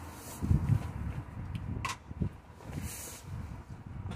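Irregular handling noises: a few dull knocks and short rustles, with no steady whine of a running grinder.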